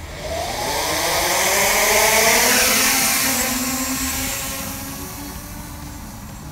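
Force1 F100 Ghost brushless quadcopter's motors and propellers spinning up for takeoff: a buzzing whine that rises in pitch over the first second, grows loudest a couple of seconds in, then fades as the drone climbs away.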